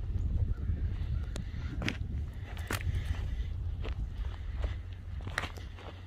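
Steady low outdoor rumble with about six short, sharp snaps spread through it.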